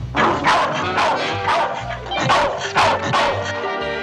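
A cartoon bulldog barking in a rapid string of about eight sharp barks over background music, the barks stopping a little before the end.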